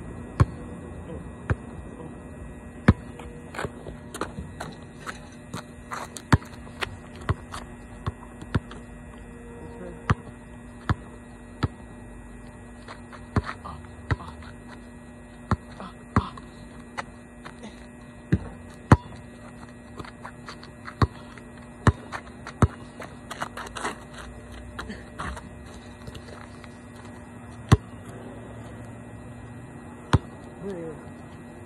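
Basketball bouncing on an asphalt court: irregularly spaced sharp thuds of dribbles and bounces, some much louder than others, over a steady low hum.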